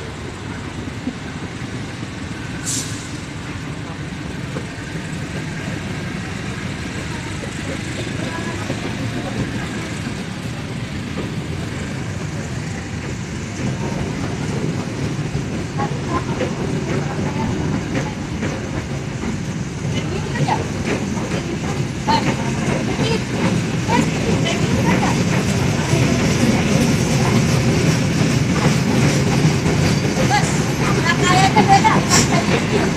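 Argo Parahyangan passenger train's coaches rolling past as it pulls out, the rolling noise growing steadily louder. From about two-thirds of the way in, the wheels click more and more often over the rail joints as the train gathers speed. A brief high-pitched sound comes about three seconds in.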